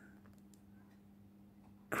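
Faint room tone with a steady low hum, and a faint click about half a second in.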